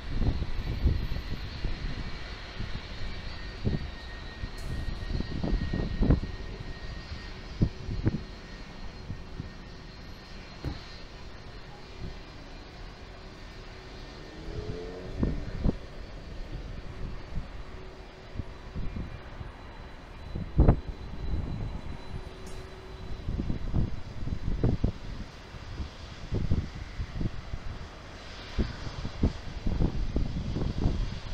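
Jet engines of an Icelandair Boeing 757-200 running with a steady rumble and a thin high whine as the airliner lines up and rolls along the runway, the whine strongest in the first ten seconds. Wind gusts thump on the microphone throughout.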